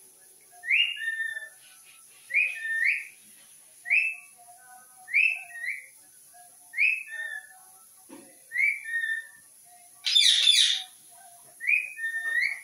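A short two-note whistle, a quick rise followed by a lower note, repeated about every second and a half. About ten seconds in comes a louder, harsher call.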